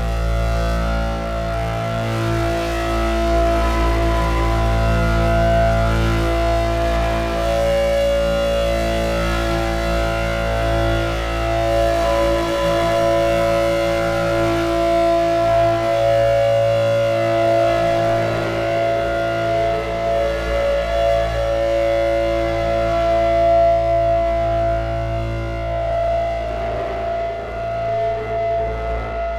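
Soma Lyra-8 drone synthesizer playing a dense, sustained ambient drone: a deep steady hum under several held tones that swell and fade slowly, shifting as its knobs are turned, with no beat.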